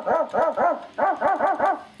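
Casio SK-5 sampling keyboard playing its built-in dog-bark sample: about eight short barks in two quick runs of four, with a short break between them.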